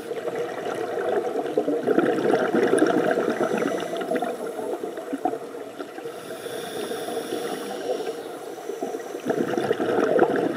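Underwater, a scuba diver's breathing through the regulator: a long rush of exhaled bubbles early on, a quieter hiss of inhaling about six to eight seconds in, then the bubble rush again near the end.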